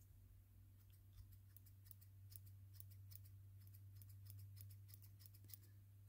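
Small fine-tipped scissors snipping a tuft of fur into fine flock: many faint, quick, irregular snips.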